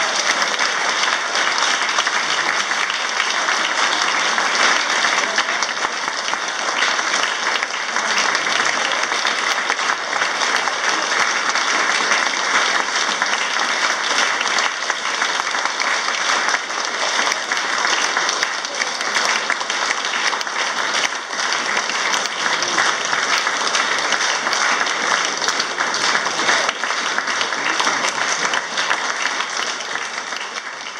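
Audience applauding steadily, many hands clapping at once with no letup.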